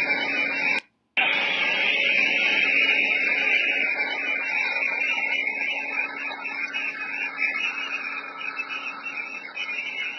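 Steady, harsh hiss of heavily compressed footage audio from a large fire scene, dropping out for a moment about a second in.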